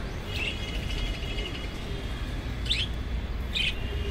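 Budgie warbling for about a second and a half, then giving two short chirps later on, over a steady low rumble.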